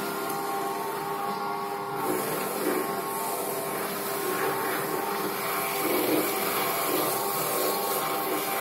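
Electric shoe shine machine running: a steady motor hum with the rotating brush scrubbing against a leather shoe pressed onto it, the brushing swelling and easing as the shoe is moved about.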